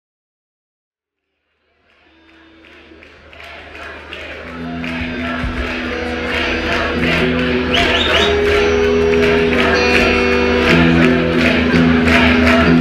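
Live rock band playing: sustained chords over a steady beat, fading in from silence about two seconds in and building to full level over the next few seconds.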